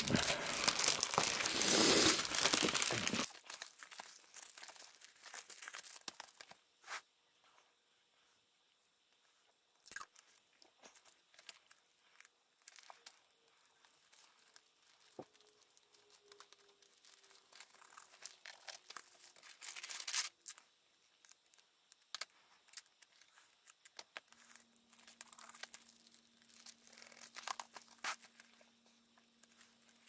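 Clear plastic Gaylord dust-jacket cover crinkling as it is handled, loudest for the first three seconds. Scattered faint rustles and crinkles follow, with louder bursts about twenty seconds in and again near the end.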